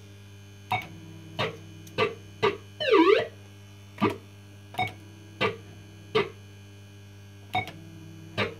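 Electronic sound effects from a 1985 PCP Blankity Bank fruit machine: short falling-pitch bleeps at irregular gaps of about half a second to a second, with one longer swooping tone about three seconds in, over the machine's steady electrical hum.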